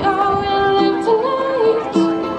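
A young woman singing held, sliding notes to her own strummed ukulele accompaniment.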